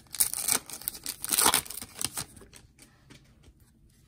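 Foil wrapper of a Donruss Optic football trading-card pack being torn open by hand. Crinkling rips fill the first two seconds, the loudest about a second and a half in, then fainter rustling as the cards come out.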